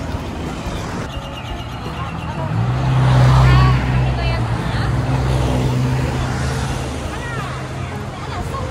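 A motor vehicle's engine running close by in street traffic: a low, steady hum that swells about two and a half seconds in, is loudest around three and a half seconds, and carries on.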